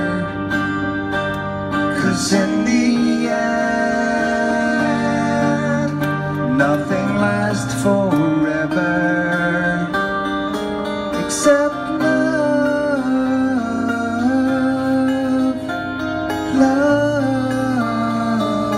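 Live acoustic guitar with a singing voice over it, playing steadily through the whole stretch.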